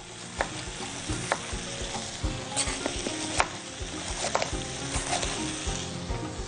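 Potato pieces frying in hot oil with a steady sizzle, while a chef's knife slices bell peppers into rings on a wooden cutting board, each stroke knocking the board about once a second.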